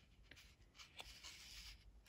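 Near silence, with faint rustling of a cardstock card being held and shifted in the hands and a light tick about a second in.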